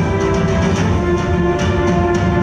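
Music for a group stage dance, with held instrumental notes over a steady beat of light, sharp percussion strikes.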